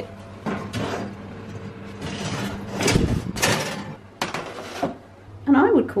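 A metal baking tray scraping out of the oven along the rack and set down on a gas stovetop, with the loudest clatter about three seconds in. A steady low hum runs underneath.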